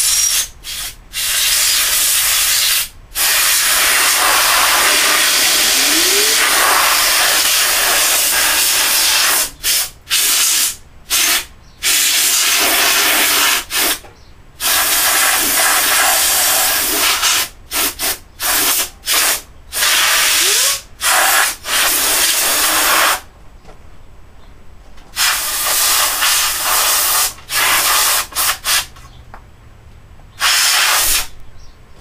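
Compressed-air blow gun on a shop air hose blowing dust out of a desktop computer case: loud hissing blasts, one long blast near the start, then many short bursts with brief pauses between.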